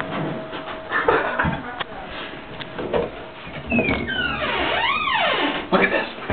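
Knocks and clatter from handling a wooden bathroom vanity drawer as it is pulled open, with a squeak that rises and then falls in pitch near the end.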